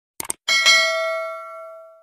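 Subscribe-button animation sound effect: two quick mouse clicks, then a bright notification-bell ding, struck twice in quick succession, that rings out and fades away over about a second and a half.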